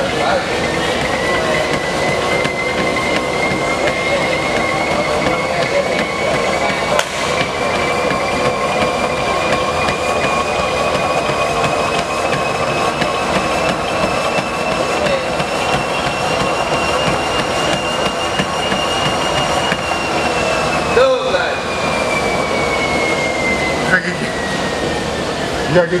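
Treadmill running under a jogger, with a steady whine that climbs slowly in pitch as the belt speeds up for about twenty seconds, then drops as the belt slows over the last few seconds.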